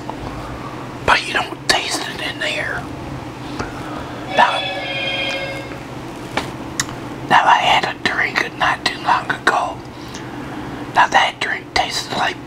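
Close-miked chewing and crunching of chips, with mouth clicks and smacks in irregular clusters, densest in the second half. A short hummed voice sound comes about halfway through.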